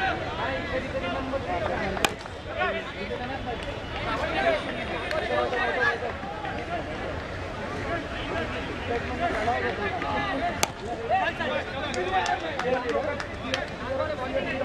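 Voices and chatter of players and onlookers around a cricket ground. There is a sharp knock about ten and a half seconds in as the ball is played, with a few smaller clicks near the end.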